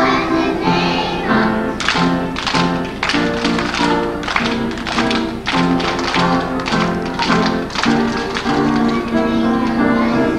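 A group of young children singing a rhythm song and clapping their hands in time. The claps begin about two seconds in, come two to three a second, and stop near the end while the singing goes on.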